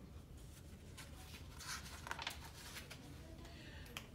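Quiet room tone with faint paper rustling as a picture-book page is turned, and a brief click near the end.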